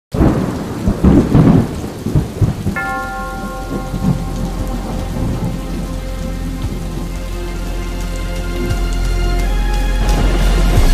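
A thunder rumble over steady rain, loudest in the first two seconds. About three seconds in, a held chord of sustained notes enters under the rain and grows slowly louder.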